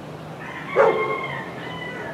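An animal call: a loud, short cry just before a second in, then a held, higher tone that steps up in pitch and runs on for about a second.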